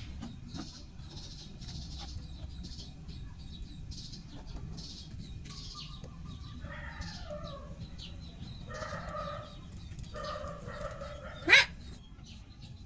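Chickens clucking: a run of short calls from about halfway through. Near the end a single brief rising whoosh, much louder than anything else.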